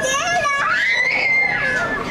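Children shouting and squealing at play, one high voice holding a long drawn-out cry while others call over it.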